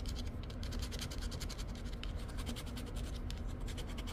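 A poker-chip-style scratcher scraping the coating off a scratch-off lottery ticket in rapid, even strokes.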